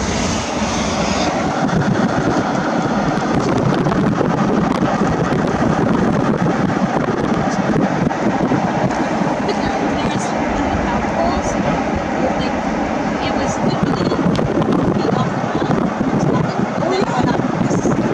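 Steady rush of wind and road noise through an open window of a car moving at road speed.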